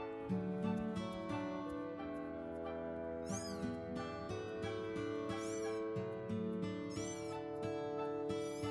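Kittens mewing in short, high calls, three times: a few seconds in, midway and near the end. Background music with sustained notes plays throughout.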